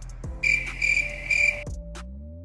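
An insect chirps three times in loud, high-pitched bursts about half a second apart, over a low background music bed.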